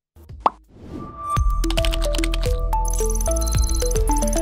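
TV station outro jingle: a single sharp pop about half a second in, then music with a deep bass, stepping melody notes and bright high tones.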